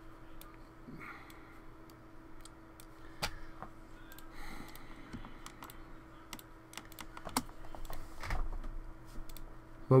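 Irregular clicks from a computer keyboard and mouse while editing on a PC, over a faint steady hum. A soft low thump comes a little past eight seconds in.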